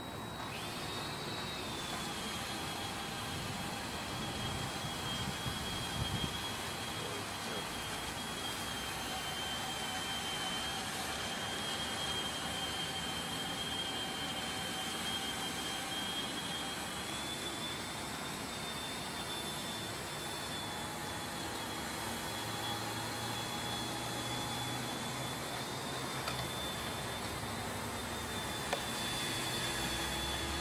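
Cordless drill driving a Crawler scaffold-moving device through its gear reduction while pulling a heavy motor coach under load: a high motor whine that starts about half a second in, settles slightly lower in pitch and holds steady.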